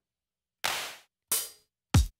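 Three sampled drum-machine sounds triggered one after another from a JavaScript drum kit: a hand clap, then a hi-hat, then a kick drum, each a short hit that dies away quickly, about two-thirds of a second apart.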